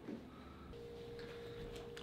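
Quiet room tone, then a steady electronic tone that starts a little under a second in and holds.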